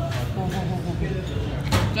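Busy restaurant room: background voices over a steady low hum, with a brief sharp knock near the end.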